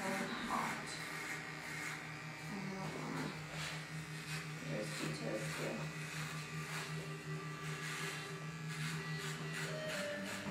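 Corded electric hair clippers run with a steady buzz as they shave hair close on the side of a head. The buzz changes pitch just before the end.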